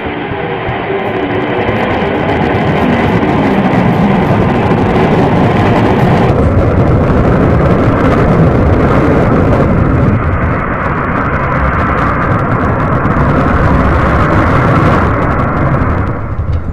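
Electric guitar played as a loud, dense, noisy drone with no clear notes, changing in texture about six seconds in and again near the end.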